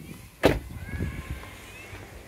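A car door shut once, a sharp knock about half a second in, followed by footsteps on asphalt and a few faint high chirps.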